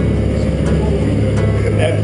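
A boat's inboard engine running steadily under way, a loud, even low drone heard from inside the wheelhouse cabin.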